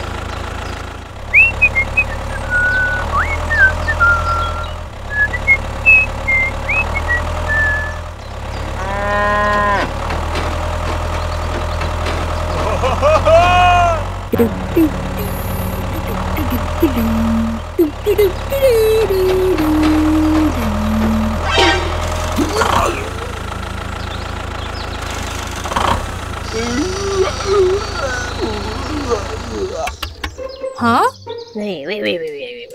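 A steady low tractor-engine drone runs throughout. Over it come short chirps in the first several seconds, then two long rising-and-falling animal calls about nine and thirteen seconds in, typical of cattle lowing.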